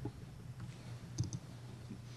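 Quiet pause in a lecture room: a steady low hum with a few faint clicks, one at the start and a couple a little over a second in.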